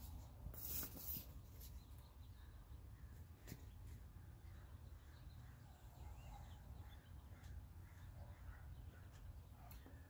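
Near silence: a low steady hum with a few faint clicks and taps as wood glue is squeezed from a plastic bottle and brushed onto wooden guitar-neck laminate strips.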